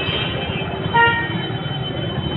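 A vehicle horn gives one short toot about a second in, over the steady noise of a jammed, crowded street.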